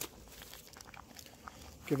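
Faint rustling and small clicks of a foil ration pouch being handled, with crushed crackers inside, ahead of stirring. A man's voice starts near the end.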